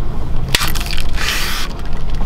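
Plastic straw punched through the sealed plastic film lid of a bubble tea cup: a sharp pop about half a second in, then a short crinkling hiss of plastic about a second in.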